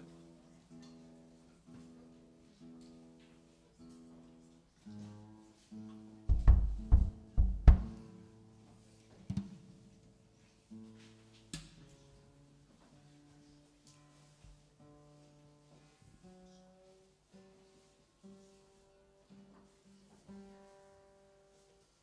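Bass guitar and acoustic guitar being tuned up: single strings plucked again and again while their pitch is adjusted, as the cold room has put the instruments out of tune. A few loud low thuds come about six to eight seconds in.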